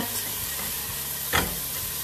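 Diced onion and minced garlic sizzling in olive oil in a pot while a wooden spoon stirs them, with one brief louder scrape of the spoon against the pot partway through.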